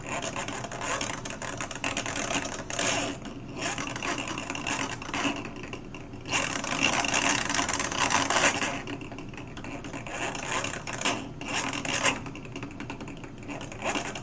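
CIM motor running under a Jaguar speed controller's PID speed control, its running sound rising and falling as the set speed is changed on the joystick. It is loudest for a couple of seconds around the middle.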